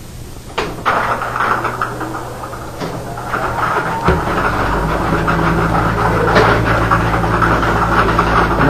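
Lottery ball-draw machine running: numbered balls rattle around in its clear plastic mixing drum, and about four seconds in the machine's motor comes on with a low, steady hum.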